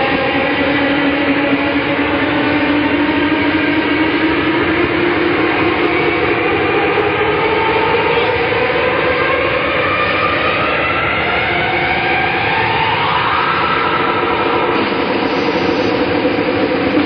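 Live rock band playing a loud, noisy instrumental passage. Distorted electric guitar holds notes that slide slowly up and down in pitch over a dense wash of noise.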